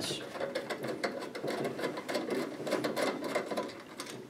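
Screwdriver working the retaining-clip screws on a canopy light fixture's lens frame: a steady run of small, rapid clicks as the screws are backed out.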